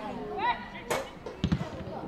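Football players shouting on the pitch during a goalmouth scramble after a corner kick. A sharp knock comes about a second in, and two dull thumps follow half a second later, typical of the ball being kicked and struck.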